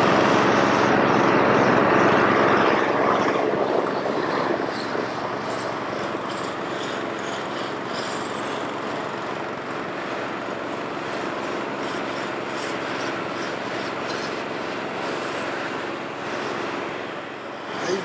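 Long-handled floor scraper rasping over the acrylic hardcourt surface as the patched tennis court is scraped and sanded down for resurfacing. The scraping is loudest for the first few seconds, with a steady machine hum underneath.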